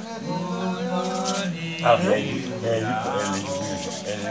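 Voices of several people overlapping, with a couple of brief scraping rasps at about a second in and again around three seconds in.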